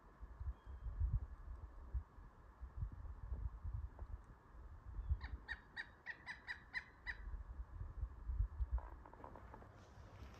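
A bird calls a quick run of about nine short, evenly spaced notes over about two seconds in the middle, then a fainter, lower run just before the end. Low thumps and rumble on the microphone throughout are the loudest sounds.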